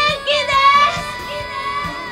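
A woman's high voice shouting long, drawn-out calls in Japanese over soft background music.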